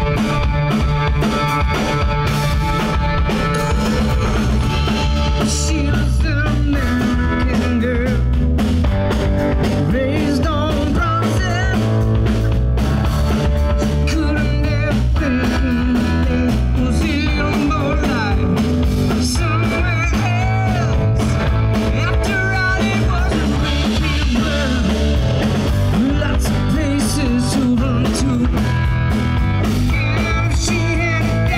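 Live rock band playing: drum kit, electric bass and electric guitar, with sung vocals.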